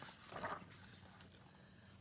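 A picture-book page being turned by hand: a light click, a short soft rustle about half a second in, then a faint paper swish.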